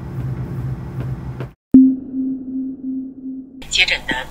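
Soundtrack sound design: a held low note of the piano-led score fades out and the sound drops out for a moment. Then comes a click and a steady low electronic tone with a faint regular pulse, and a broadcast voice begins near the end.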